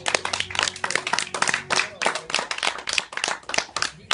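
A small audience clapping as the song ends, a run of separate claps that thins out and stops near the end.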